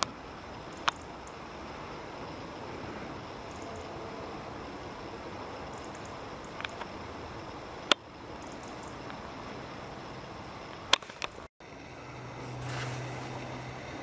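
Steady rush of river water, with three sharp clicks: about a second in, near eight seconds and near eleven seconds. Near the end the sound drops out briefly and a low steady hum comes in under louder noise.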